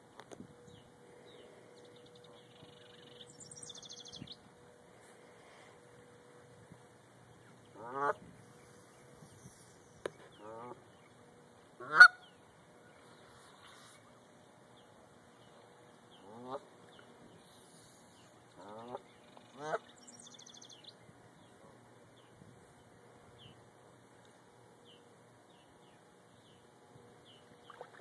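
Canada geese honking: a scattered handful of short calls, the loudest about midway, with stretches of quiet between them.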